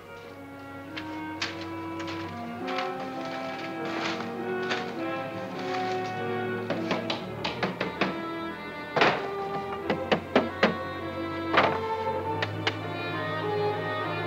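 Dramatic orchestral film score with held notes, and over it a run of sharp knocks and taps in the second half, the loudest about nine seconds in, as the flat boards from inside the cloth bolts are handled and set down on a wooden table.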